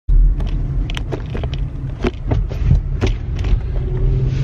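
Steady low rumble of a moving car heard inside its cabin, with scattered sharp clicks and knocks.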